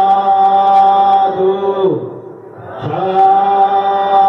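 Buddhist devotional chanting by a male voice, each phrase held on a long steady note for about two seconds and sliding down in pitch at its end. After a short lull near the middle, the next drawn-out phrase begins.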